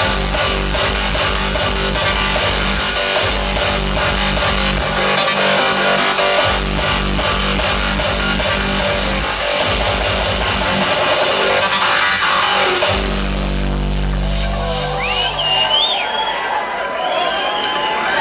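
Loud hardstyle music played over a club sound system, with a pounding kick drum and distorted bass. The beat drops out about 13 seconds in, giving way to a long held bass note. Wavering crowd voices rise over it near the end.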